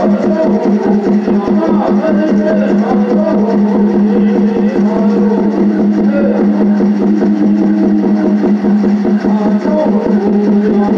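Native American Church peyote-meeting song: voices singing over a fast, steady water-drum beat, with the drum's pitched ring running underneath.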